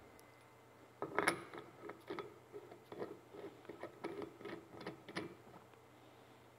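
Divesoft professional flow limiter, a small chrome metal fitting, being handled and fitted to the neck of a small gas tank: a run of light, irregular metallic clicks and clinks, about two a second, starting about a second in and stopping shortly before the end.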